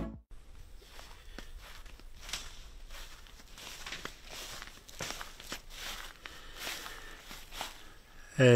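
Faint footsteps crunching through leaves and plant debris, a scatter of irregular crackles over a low steady hum.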